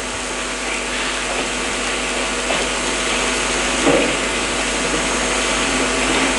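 A loud, steady hiss with a hum of several steady tones under it, growing slightly louder, with one soft brief sound about four seconds in.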